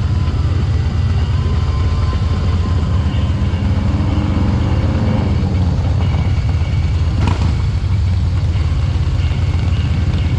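Steady low rumble of wind and road noise on a camera riding down a city street, with a brief sharp knock about seven seconds in.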